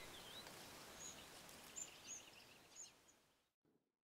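Faint ambience of a shallow stream with a few faint, high bird chirps scattered through it, cutting to silence about three seconds in.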